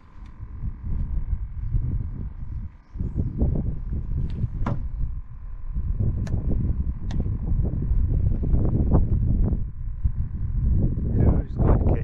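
Wind buffeting the microphone in an uneven, gusty low rumble, with a few brief sharp clicks.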